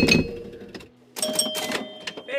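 Electromechanical pinball machine in play: a clatter of relays and score reels with bells ringing, in two bursts, the louder at the start and another a little past a second in.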